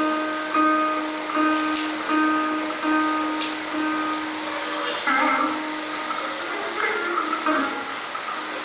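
Carnatic veena playing in Surati raga: a run of plucked notes repeated at one pitch, about every two-thirds of a second, then quicker phrases with bent, gliding notes from about five seconds in.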